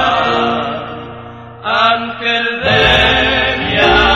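Paraguayan orchestra music: a held chord fades away over about a second and a half, then the orchestra comes back in with a new phrase about halfway through, building again toward the end.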